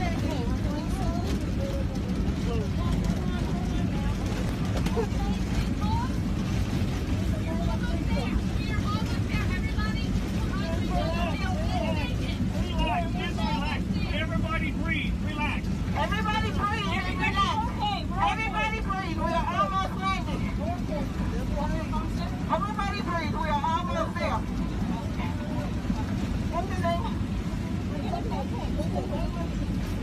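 Loud, steady low roar with a constant low hum inside the cabin of a Boeing 737-700 airliner in flight after one of its engines exploded, with raised voices calling out over it.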